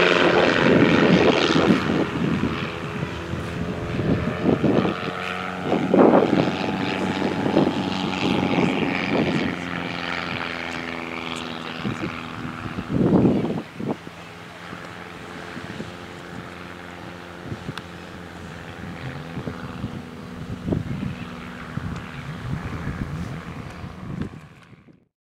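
Silence Twister aerobatic plane's propeller engine droning in flight. Its pitch falls as it passes at the start, and the sound grows much fainter about fourteen seconds in as the aircraft move off.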